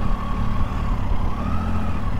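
Motorcycle riding at speed: a steady low rumble of engine and wind on the microphone. Over it runs a thin whine near 1 kHz that slowly rises and falls in pitch.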